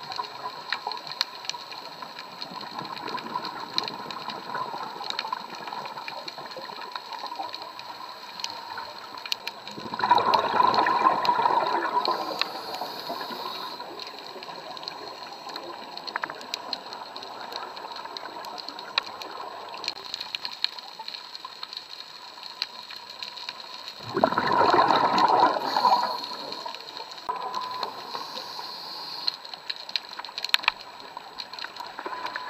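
Scuba diver's exhaled bubbles rushing up past the underwater camera in two bursts of about two seconds, one about a third of the way in and one near the end. Between them there is a steady underwater hiss with scattered small clicks.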